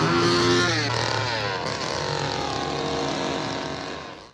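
An engine running loud and revving, its pitch shifting up and down.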